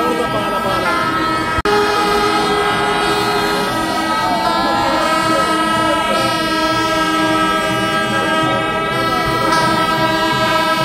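Kerala temple-festival wind instruments, kombu horns and kuzhal, holding long, steady notes together over a crowd's voices. The sound drops out for an instant about one and a half seconds in.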